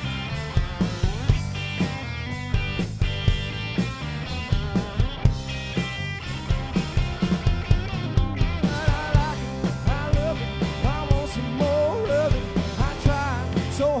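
Live country rock band playing at full volume, with drums keeping a steady beat under guitars. A singer's voice comes in about nine seconds in.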